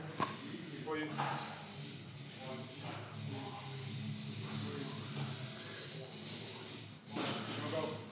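Faint, indistinct voices over quiet background music with a steady low bass, and a brief louder rustle near the end.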